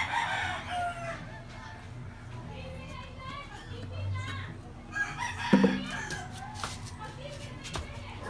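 A rooster crowing in the background, together with a few sharp metal clicks from steel tyre levers working a knobby tyre's bead over a spoked rim.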